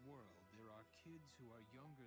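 Faint dialogue in a man's voice over quiet background music.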